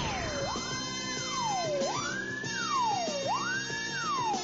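Title theme music of a TV crime programme: a steady musical beat under a siren-like wailing tone that rises and falls about every second and a half.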